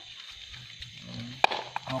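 A short pause between spoken phrases, with faint background noise and a brief low murmur, broken by a sharp click about a second and a half in and a fainter click just after.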